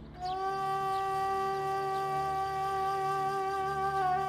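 Background score: a flute-like wind instrument holds one long, steady note over a faint low drone.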